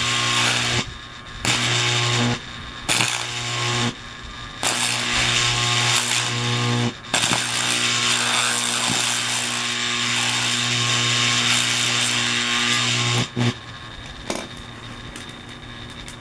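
Electric arc struck between two rod electrodes held in locking pliers, melting cobalt powder on a firebrick. It makes a loud buzzing crackle over a steady electrical hum. The arc is struck and broken four times in the first seven seconds, held for about six seconds, then cut off, leaving a fainter noise.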